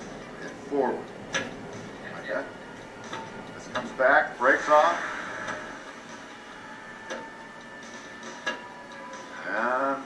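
Voices speaking in short snatches, with a few sharp clicks in between.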